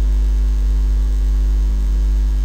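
Steady, loud, low electrical mains hum with a few fainter steady overtones above it; nothing else stands out.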